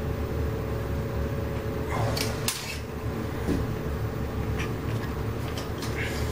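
A few light clicks and taps of a spirit level and tape measure being handled against a wall, the clearest about two seconds in, over a steady low hum.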